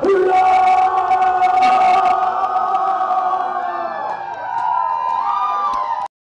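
A live band's song ending on a long held note, with the crowd cheering and whooping over it.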